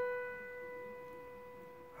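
A single piano note, the B above middle C, ringing on and slowly fading away.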